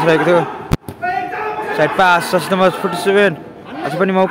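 A man commentating on a futsal match, with a single sharp click about three-quarters of a second in that briefly cuts the sound.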